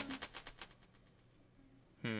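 Electronic synth music played from a Maschine MK3 stops, leaving a quick, fading string of repeats that dies away over about a second, then near silence.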